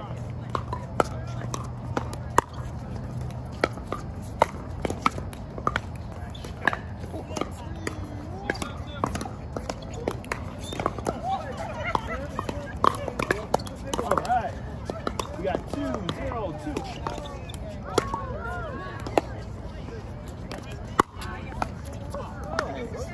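Pickleball paddles striking a hard plastic ball, a series of sharp pops at irregular intervals through a rally, with more hits from neighbouring courts. Players' voices are heard faintly in the background.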